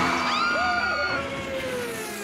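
Cartoon vehicle sound effect: a tracked car driving fast, with a whine that slides slowly down in pitch and fades a little.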